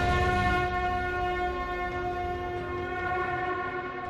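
A conch shell (shankh) blown in one long, steady note at a constant pitch, rich in overtones.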